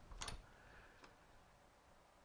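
A short metallic click from a wrench on a lathe's tool post nut as the tool is locked at its set angle, about a quarter second in, then a faint tick about a second in; otherwise near silence.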